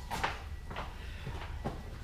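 A few faint knocks and clicks of tools being handled, about three light strokes, over a low hum.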